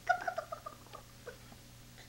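Baby's high-pitched squeal, sliding slightly down in pitch, followed by a few shorter squeaky sounds over the next second.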